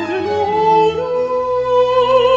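Countertenor singing a Baroque aria over sustained low notes from a period instrumental ensemble; about half a second in, the voice glides up into a long held note with vibrato.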